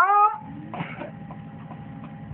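A man's voice through a microphone: one drawn-out vocal sound rising steeply in pitch at the very start. It is followed by a low steady background hiss with a faint constant tone and a few soft clicks.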